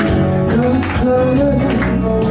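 A woman singing a Shōwa-era Japanese pop (kayōkyoku) song into a microphone over backing music with a steady beat.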